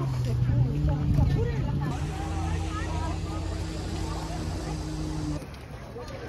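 Steady low hum of an idling engine under the chatter of many people walking past. The sound drops and changes about five seconds in.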